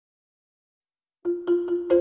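Silence, then a marimba played with mallets comes in a little over a second in: quick repeated strikes on the same note, each ringing briefly, with a higher note joining near the end.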